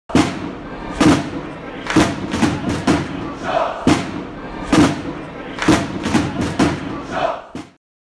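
Channel intro sting: a crowd chanting over a series of loud, heavy hits in an uneven stomping rhythm, about one a second with some quicker pairs, cutting off suddenly near the end.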